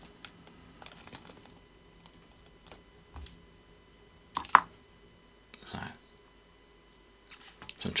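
Small clicks and light rustling from handling a small plastic parts bag and metal tweezers, with one sharp, louder click about four and a half seconds in.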